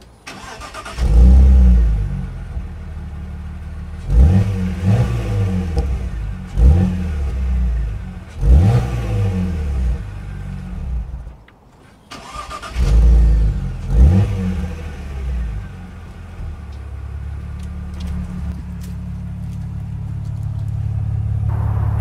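Exhaust of a BMW E46 325's 2.5-litre straight-six, heard at the tailpipes: the engine starts, is blipped three times, goes quiet briefly, starts again with another blip, then settles into a steady idle. The rear silencer has two holes drilled into its box to give the exhaust a deeper, bassier note.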